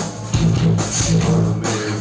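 A rock band playing live: guitars, bass and a drum kit with cymbal hits on a steady beat. The sound dips briefly just after the start, then comes back in at full level.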